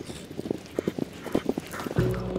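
Horses' hooves clopping, an uneven run of hoofbeats about four a second.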